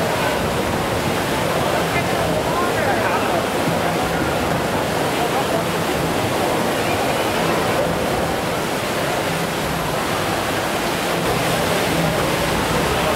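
A steady rushing wash of background noise with faint, indistinct voices murmuring in it.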